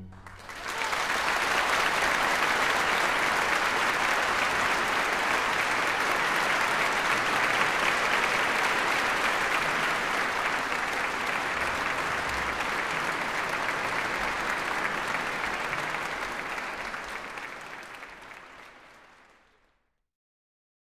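Audience applauding right after the music stops, a steady clapping that fades out over the last few seconds.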